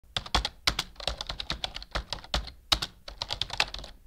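Rapid, uneven clicking of keys on a computer keyboard, typing at about eight keystrokes a second.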